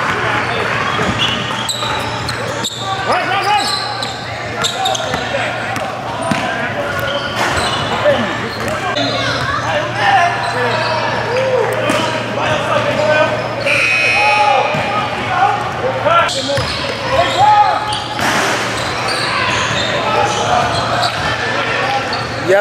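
Basketball dribbling and bouncing on a hardwood gym floor, sharp knocks at irregular intervals echoing in a large hall, under indistinct players' voices.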